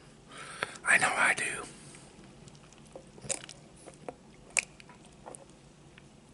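Close-miked chewing of food, with sharp wet mouth clicks and smacks scattered through. A louder breathy burst comes about a second in.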